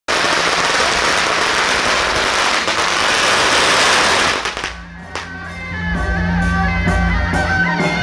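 A string of firecrackers going off in a rapid, continuous crackle for about four and a half seconds, then stopping. Music with a steady beat starts about five seconds in.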